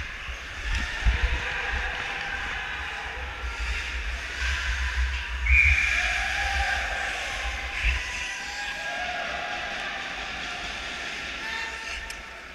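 Hockey skate blades hissing and scraping on rink ice as the skater wearing the camera moves, over a steady low rumble. A short, louder high-pitched scrape comes about five and a half seconds in.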